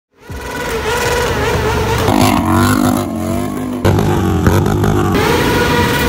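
Motorcycle engines revving, their pitch rising and falling, with sudden changes in the sound about two and four seconds in.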